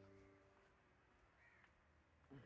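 Near silence: the last sustained notes of background music fade out within the first half second, then a faint bird call comes about one and a half seconds in.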